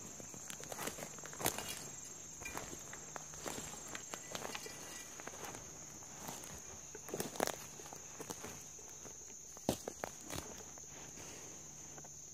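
Footsteps in dry leaf litter, irregular rustling crunches, a few louder than the rest, over a steady high-pitched drone of insects.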